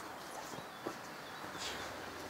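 Quiet outdoor background with a few faint clicks and taps; no engine is running.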